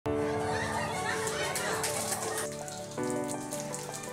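Music with held chords that change about three seconds in, over a group of people clapping and voices in a room.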